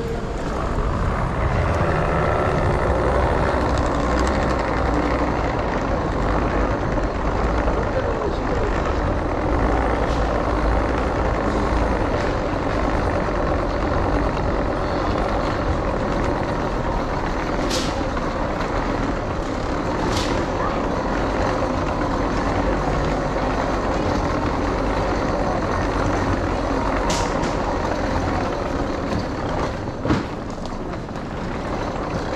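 Steady rumbling of suitcase wheels rolling over a hard tiled floor, with a few brief high clicks; the rumble stops at the end.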